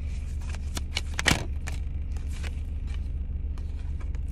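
Tarot cards being handled and drawn from a deck: a run of light clicks and rustles with one sharper snap about a second in. Under it is a steady low hum in the car cabin.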